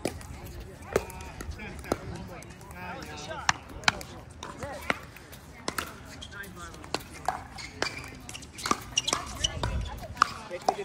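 Pickleball paddles hitting a hard plastic pickleball in a doubles rally, with ball bounces on the hard court: sharp pocks roughly once a second, some in quick pairs. Faint voices are heard in the background.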